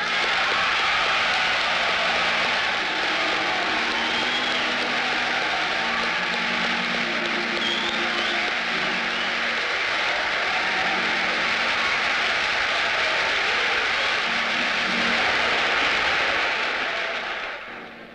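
A church congregation applauding and cheering, a dense steady sound of many people clapping that dies away near the end.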